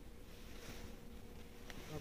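Faint steady buzzing hum over low room noise.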